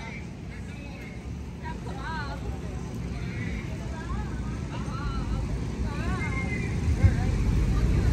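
Faint, distant voices talking over a steady low rumble that grows louder near the end.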